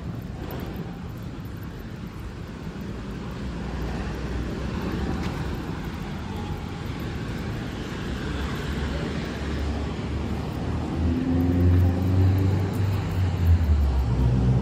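Street traffic noise, growing louder, with a vehicle engine running close by over the last few seconds as its low hum becomes the loudest sound.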